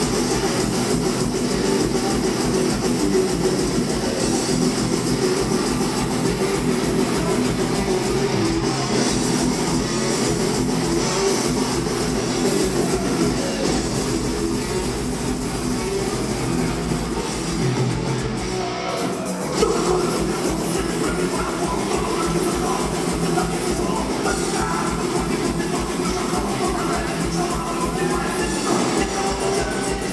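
A heavy metal band playing live, with distorted electric guitars over drums and a fast, steady kick-drum pulse. The band breaks off for a moment a little past halfway, then comes back in.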